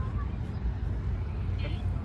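Outdoor ambience: a steady low rumble with faint distant voices of people nearby.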